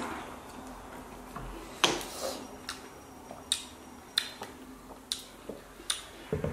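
Eating sounds from lime wedges seasoned with chili and Tajín being sucked and chewed: a run of short, wet mouth clicks and lip smacks, about one a second.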